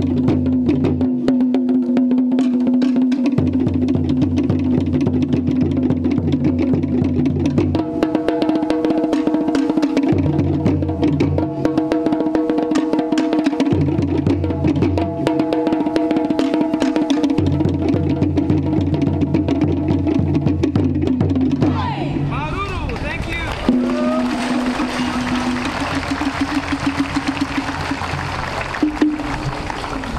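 Tahitian drum ensemble: rapid strokes on wooden slit drums over deep drum beats that come and go in blocks, with a steady held tone underneath. About 22 seconds in the drumming stops and crowd cheering and applause take over.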